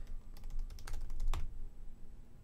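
Typing on a computer keyboard: a quick, irregular run of key clicks that thins out in the last half second.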